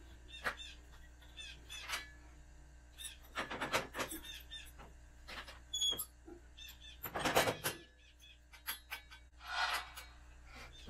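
Scattered metal clinks and knocks with a few short squeaks as a steel three-point hitch receiver drawbar is worked onto the tractor's lower lift-arm pins. The loudest clatter comes about seven seconds in.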